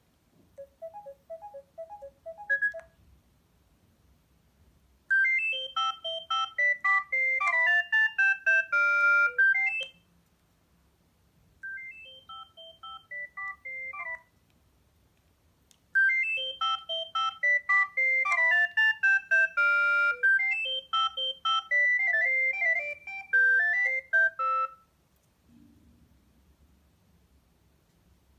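Sagem myC2-3 mobile phone playing its original built-in ringtones one after another, each a short electronic melody of quick notes. A brief quiet tune comes first, then a loud one of about five seconds, a short quieter one, and a longer loud one of about nine seconds, with short pauses between them.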